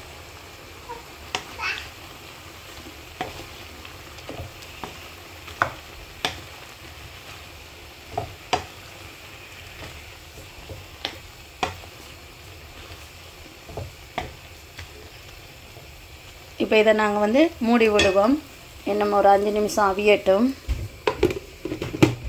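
Wooden spatula stirring liver, onion and tomato in a nonstick frying pan over a steady faint sizzle, with irregular sharp knocks and scrapes of the spatula against the pan. A person's voice comes in near the end.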